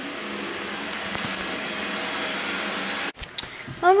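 A vacuum cleaner running steadily with a whirring hum, cutting off suddenly about three seconds in.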